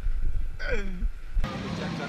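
Wind rumbling on an action camera's microphone as a suspended jumper swings on the line, with one short falling exclamation from him; about one and a half seconds in it cuts abruptly to steadier outdoor city ambience.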